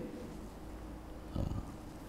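Quiet room tone with a steady low hum through the lecture microphone. A brief, soft, low sound comes about one and a half seconds in.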